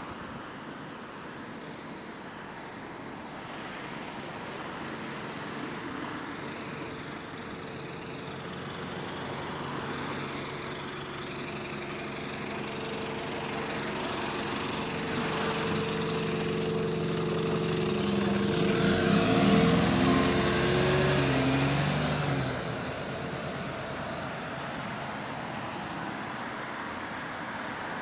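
Road traffic noise with one motor vehicle's engine hum growing louder over several seconds, passing close with a drop in pitch about twenty seconds in, then fading back into steady traffic noise.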